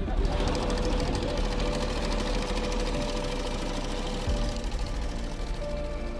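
Small fishing boat engines running with a rapid, even chugging beat, under background music.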